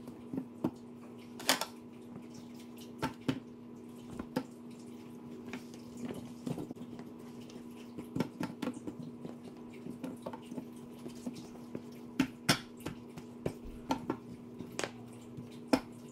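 Potato and eggplant slices being laid by hand into a black roasting pan: scattered soft taps and clicks, many of them at irregular intervals, over a steady low hum.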